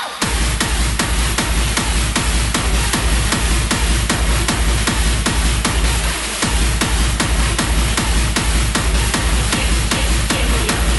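Hardstyle dance music played loud over a festival sound system: a heavy bass kick drum at about two and a half beats a second comes in right at the start after a build-up and drives on, dropping out briefly just after six seconds.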